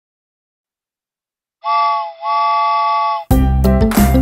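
Cartoon steam-train whistle sounding two toots in a chord of several pitches, the first short and the second longer, after about a second and a half of silence. Upbeat children's music begins near the end.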